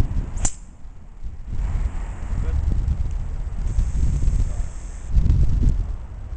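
A golf club strikes a teed golf ball about half a second in, one sharp crack, followed by wind rumbling on the microphone.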